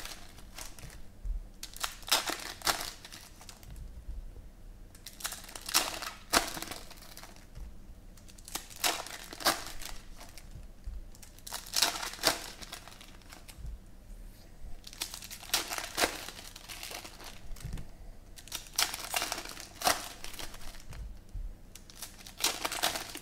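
Silver foil trading-card pack wrappers crinkling and tearing as they are ripped open by hand, in short spells every few seconds.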